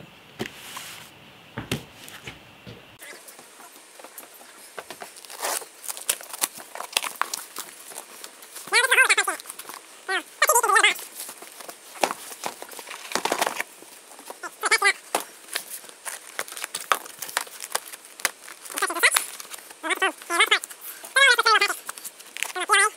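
Packing tape being ripped off a cardboard shipping box in several short, screechy pulls, among scraping and knocking of the cardboard as the box is opened.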